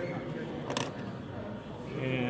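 Indistinct voices in the background, with one sharp click a little under a second in.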